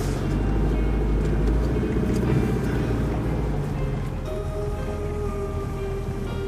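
Car cabin road and engine rumble while driving, with music playing over it; clearer held notes come in about four seconds in.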